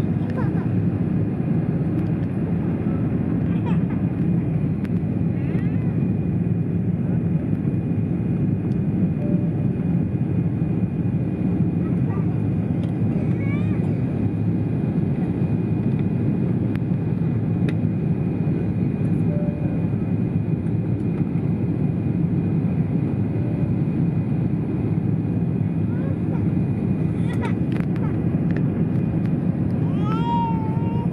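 Steady airliner cabin noise on descent to land: the low, even rumble of the jet engines and airflow heard from inside the passenger cabin, with a faint steady high tone over it.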